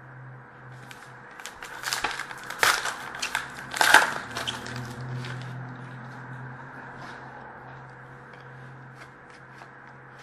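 A trading-card pack wrapper being torn open and crinkled: a flurry of crackling and ripping, loudest around four seconds in. After that come a few light ticks as the cards are slid out and handled.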